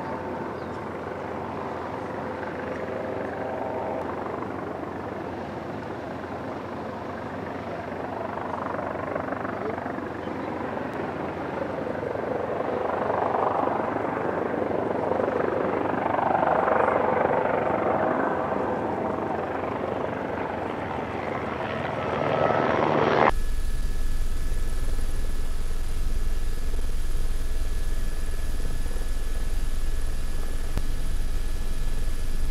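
Airbus E-Fan's two electric ducted fans whining as the plane lines up and takes off, the whine swelling twice in the middle. About three quarters of the way through, the sound cuts abruptly to a steady low rumble with a thin high whistle, the sound of an aircraft in flight.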